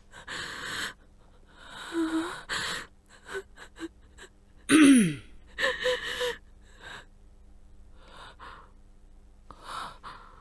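A woman's heavy, gasping breaths, with a loud voiced cry that falls in pitch about five seconds in, then a few faint breaths.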